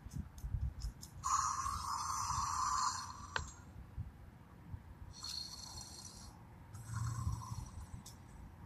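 WowWee Untamed Fingerlings interactive dinosaur toy playing electronic creature sounds through its small speaker as it is handled: one lasting about two seconds, then a sharp click, then two shorter sounds near the end.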